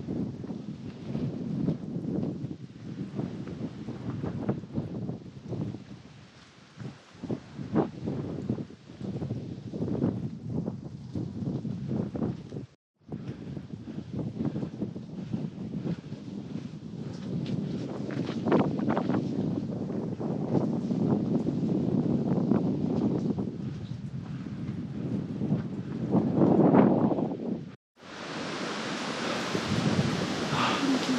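Wind buffeting the microphone outdoors, a gusty low rumble with rustling. The sound cuts out briefly twice.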